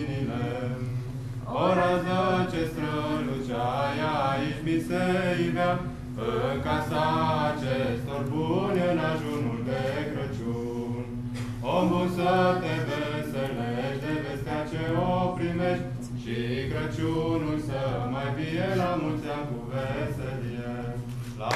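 Voices singing a Romanian Christmas carol (colindă), in phrases of about five seconds each.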